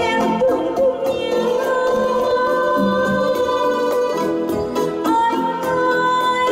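A woman singing into a microphone, holding long notes over electronic keyboard accompaniment with a steady programmed beat.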